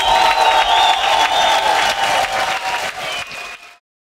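Concert crowd applauding and cheering at the end of a metal band's set, with a held tone ringing under the noise. It fades near the end and then cuts off abruptly.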